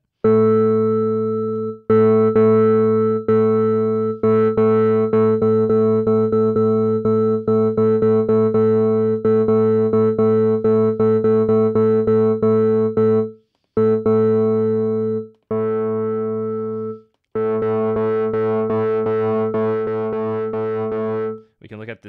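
Bitwig FM-4 synthesizer used as an additive synth: a low sustained organ-like note built from sine partials at harmonic ratios, some slightly detuned, driven through Bitwig's Distortion. Many short clicks run through the tone, and it stops and restarts three times in the second half.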